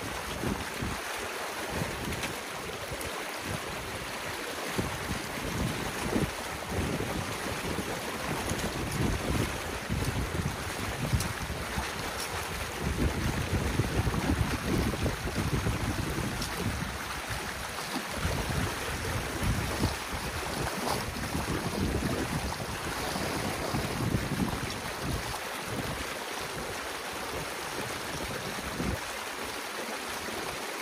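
Water rushing steadily through the opened gap in an old beaver dam as the water held behind it drains away, with gusts of wind buffeting the microphone.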